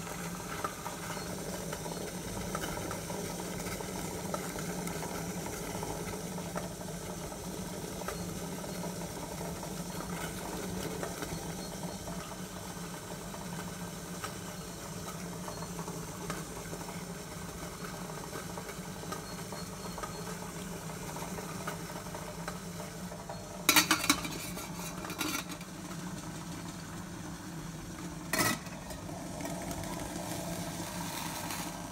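Steady rumble and hiss of a stovetop steamer pot heating water. Near the end, stainless steel steamer plates clatter briefly, then clink once more a few seconds later.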